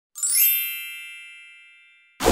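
A bright chime sound effect: a quick rising shimmer of high, bell-like tones that rings on and fades slowly over about a second and a half.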